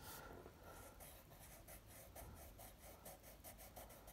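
Faint, quick scratching of a pencil shading on paper, several short strokes a second.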